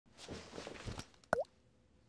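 Logo-animation sound effects: a soft whooshing swell, then a single bright plop a little over a second in, its pitch dipping and springing back up.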